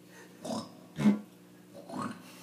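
Didgeridoo giving three short, grunting blasts about half a second apart, the middle one loudest, over a faint steady low drone.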